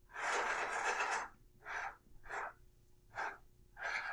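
Dry-erase marker writing on a whiteboard: one long scratchy stroke lasting about a second, then four short strokes about half a second apart.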